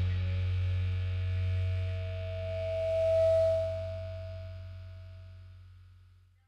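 A rock band's last chord ringing out on electric guitar and bass: a held low bass note under the chord, and a single clear tone that swells about three seconds in before everything dies away.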